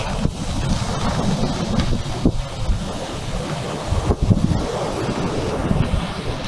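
Wind buffeting a phone's microphone in uneven gusts of low rumble, over the steady rush of ocean surf breaking on a beach.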